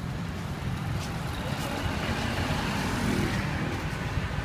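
Street traffic noise: a steady engine rumble from passing vehicles, swelling somewhat in the second half.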